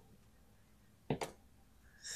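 A four-sided die landing on a tabletop: a quick double click about a second in, otherwise near silence.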